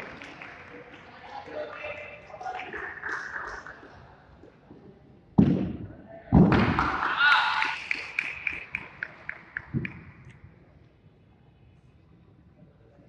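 Two heavy thuds of a gymnast's feet striking the floor mat during a tumbling pass, about a second apart, followed by voices and a short run of sharp claps that fades out.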